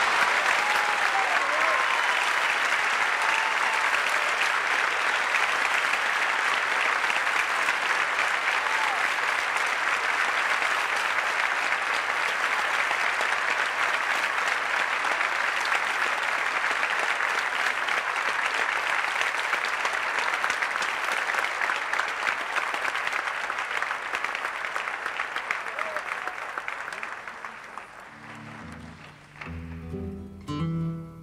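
Theatre audience applauding steadily for most of half a minute, the clapping dying away near the end as an acoustic guitar starts to play.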